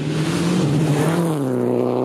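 Racing car engine at high revs, one steady note whose pitch drops a step about two-thirds of the way through.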